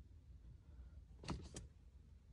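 Near silence with a low hum, broken about a second and a half in by two or three short, soft clicks close together.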